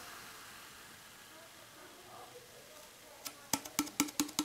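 A can of porter being poured into a pint glass: a faint, steady pour, then in the last second or so a quick run of sharp pops as the nearly empty can is tipped up and glugs out the last of the beer.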